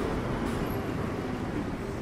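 Steady city street traffic noise: a low, even hum of vehicles on the road.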